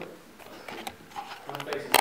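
Faint talk in a small room, with a few sharp clicks near the end.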